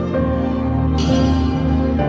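Slow symphonic music played on an electronic keyboard, with long held chords. The chord changes at the start and again at the end, and a brief bright swish comes about a second in.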